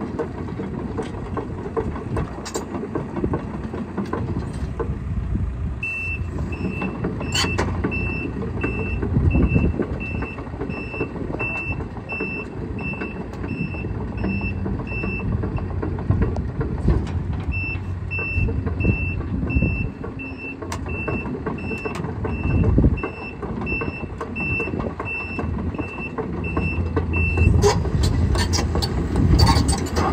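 Case CX210D excavator's diesel engine running steadily while its travel alarm beeps about twice a second in two long runs as the machine tracks. Occasional metallic clanks from the tracks, strongest near the end.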